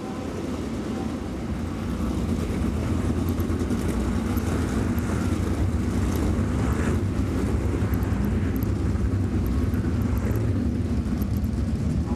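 A field of sprint cars' V8 engines idling together as they roll slowly around the track, a deep steady rumble that swells a little over the first couple of seconds.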